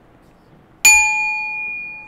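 A small metal bell struck once about a second in, then ringing on with a clear, steady tone that slowly fades.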